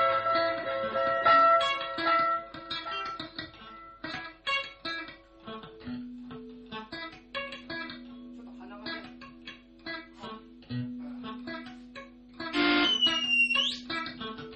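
Free-improvised electric guitar: a loud sustained chord fades over the first couple of seconds, then sparse, scattered picked notes ring over a held low drone. Near the end comes a loud burst with a high thin squeal that dips and then sweeps sharply upward.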